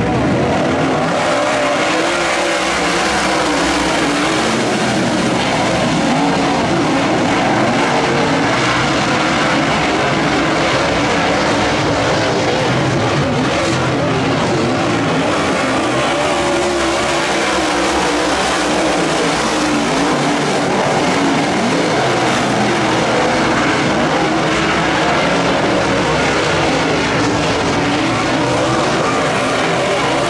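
A pack of dirt late model race cars with V8 engines running hard around a dirt oval: a loud, steady wall of engine noise whose pitch wavers up and down as the cars go through the turns and down the straights.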